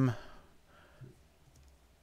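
The end of a spoken word, then a single faint computer click about a second in, with the room otherwise quiet.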